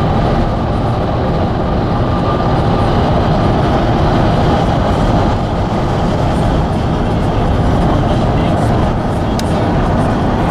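Steady rumble of tyres, engine and wind at highway speed, heard from inside a moving vehicle.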